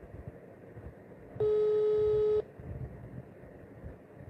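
Telephone line tone: one steady beep about a second long, starting about one and a half seconds in, the ringing tone heard while a call waits to be answered. Faint room noise lies under it.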